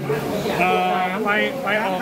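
Men talking, one voice wobbling in pitch for a moment.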